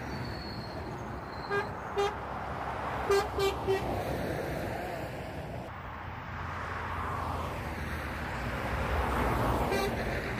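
Motorway traffic passing, with a vehicle horn sounding five short toots: two about one and a half seconds in, then three quick ones around three seconds in. The traffic noise swells and fades as vehicles go by.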